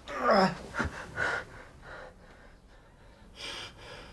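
A hurt man gasping in pain. A loud pained gasp falls in pitch at the start, two shorter sharp breaths follow about a second in, and there is a heavier breath near the end.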